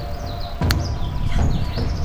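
Small birds chirping repeatedly in short, quick high-pitched calls, over a low rumble, with a single sharp click about two-thirds of a second in.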